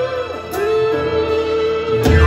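Live pop ballad: a woman singing to a stage keyboard's piano sound. A long held note starts about half a second in.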